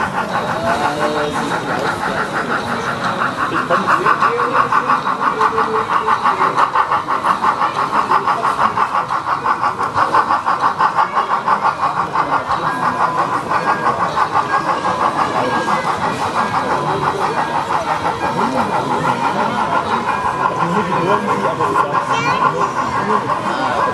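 HO-scale model steam locomotive running with a train of flat cars, its steady rhythmic chuffing pulsing about four times a second, over the chatter of a crowd.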